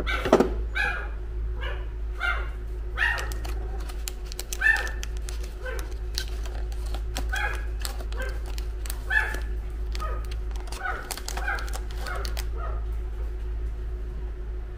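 A dog barking in short, high yips, about two a second, which stop shortly before the end.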